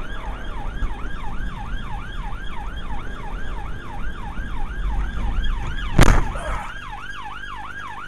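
Police car siren on a fast yelp, rising and falling about three to four times a second over engine and road rumble. About six seconds in comes one loud crash: the police car running into the back of the fleeing car after it slammed its brakes on. The road rumble then drops away while the siren keeps going.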